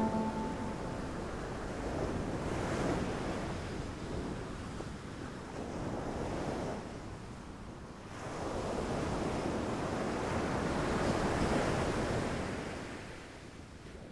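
Ocean waves washing in, in slow surges a few seconds apart, fading out near the end; a music chord dies away at the very start.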